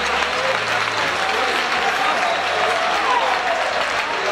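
Audience applauding steadily in a boxing hall, with voices calling out over the clapping.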